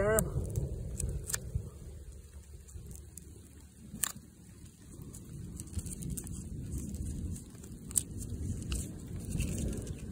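A knife blade cutting notches into a paper hunting tag held against tree bark: faint scraping with a few sharp clicks, over a steady low rumble.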